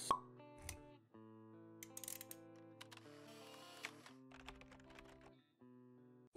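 Quiet intro jingle of held musical notes with scattered soft clicks, opening with a sharp pop, the loudest sound, right at the start.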